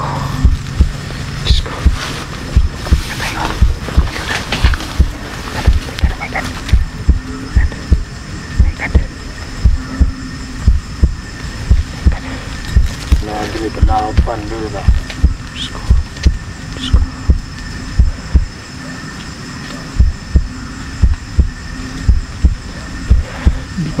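Low, dull thumps at a steady beat of about two a second, heartbeat-like. There is a brief faint voice about halfway through.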